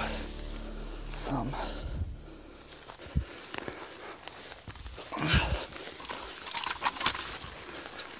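Grass and brush rustling with scrapes as a rusted metal piece of old equipment is dragged up out of the undergrowth by hand, with a few sharp knocks about seven seconds in.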